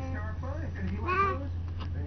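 Baby babbling in high-pitched, drawn-out vocal sounds, the loudest a rising-and-falling squeal about a second in, over a steady low hum.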